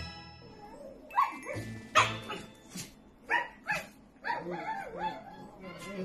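A corgi barking, a string of sharp barks over comic background music.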